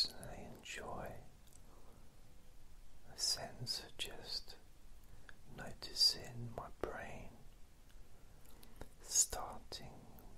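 A man whispering close to the microphone in slow, breathy phrases, with sharp hissing s sounds standing out about every three seconds.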